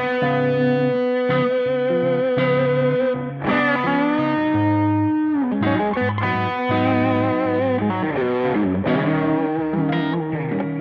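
Two Epiphone ES Les Paul semi-hollow electric guitars played through a distortion pedal, jamming basic blues. Lead notes are held with vibrato, and there are string bends up and back down.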